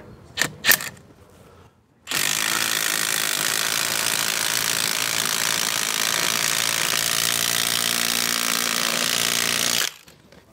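A cordless impact wrench running at full power for about eight seconds as it drives a concrete screw anchor into a drilled hole, crushing and mixing a resin capsule inside; it cuts off suddenly as the anchor seats. A couple of short clicks come just before it starts, as the socket is fitted onto the screw head.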